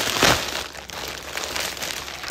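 Plastic mailing bag crinkling and rustling as it is handled, loudest in one sweep about a quarter second in and then lighter, patchy crackling.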